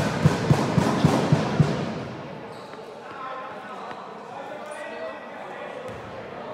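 A basketball dribbled on a sports-hall floor: rapid, even bounces about four a second that stop a little under two seconds in. A low murmur of voices follows.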